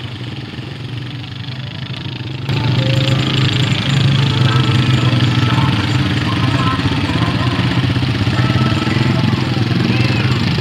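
Honda Rancher 420 ATV's single-cylinder engine running steadily while the quad sits half-submerged in muddy water, its wheels churning the water. The sound gets markedly louder about two and a half seconds in.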